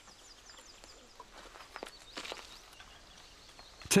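Faint woodland birdsong of short, high chirps over a quiet outdoor background, with a few light knocks near the middle.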